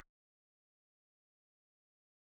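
Silence: the sound cuts out completely as the speech ends.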